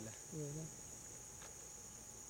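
Crickets chirring as a steady, faint, high-pitched drone.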